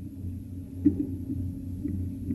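A pause filled with a steady low hum and room tone, with a faint brief click a little under a second in.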